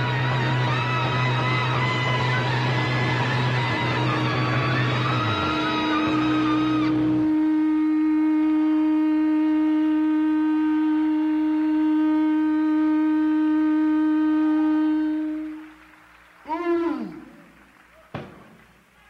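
Live rock band music in an old FM broadcast recording. The full band plays over a steady bass note; about seven seconds in it drops to one long held note that fades out. Near the end a short swooping tone rises and falls, then the sound goes almost quiet.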